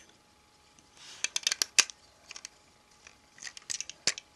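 Light plastic clicks and rattles of a Lego truck model being handled and turned in the hand: a quick cluster of clicks about a second in and another near the end.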